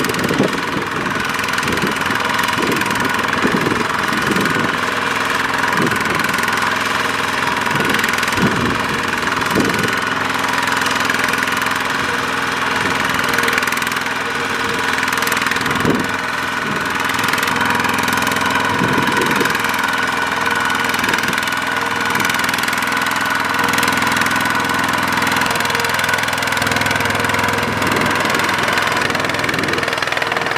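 Single-cylinder diesel engine of a two-wheel walking tractor running steadily with a knocking beat, working under load as it hauls a trailer of rice sacks through deep mud.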